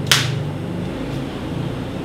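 Film clapperboard snapped shut once just after the start, a single sharp clap, followed by a steady low hum of room tone.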